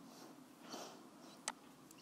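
Near silence with faint room tone: a soft breath at the microphone just under a second in, and a single sharp computer-mouse click about a second and a half in.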